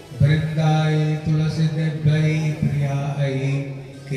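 Devotional chanting sung by a voice over a steady drone, with a few drum strokes.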